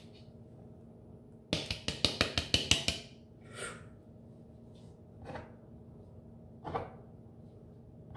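Plastic food processor bowl knocked quickly against a plastic container, about ten sharp knocks in a second and a half, to shake out a thick marinade. A few soft wet swishes follow.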